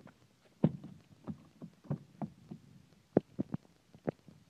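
Footsteps crunching over dry grass and leaves, a step about every third of a second. About three seconds in come a few sharper clicks as the rear door of a 2012 Hyundai Equus is unlatched and swung open.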